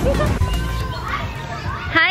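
People's voices outdoors, talking and calling out.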